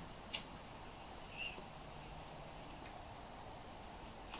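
A quiet room with a single sharp click just after the start and a faint, short high chirp about a second and a half in.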